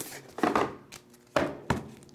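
Trading-card handling noises: a foil pack wrapper rustling and cards in rigid plastic holders knocking together, in three short, sharp bursts.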